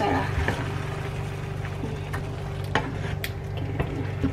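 A spatula stirring a simmering sweet-and-sour sauce around fried fish in a nonstick frying pan, with soft bubbling and a few light knocks and scrapes of the spatula against the pan, over a low steady hum.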